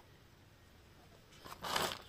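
Dry potting mix of soil and rice hulls rustling and scraping against a plastic scoop, in one short burst near the end after a quiet stretch.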